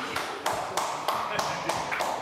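Laughter with steady hand slaps or claps, about three to four a second, in reaction to a joke.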